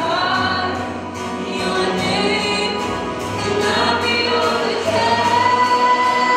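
Live worship band playing a song with many voices singing together over a steady beat, the sound of a crowd singing along; a single sung note is held near the end.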